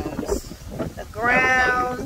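Speech: a voice saying a few words, then drawing one word out in a long held tone through most of the second half.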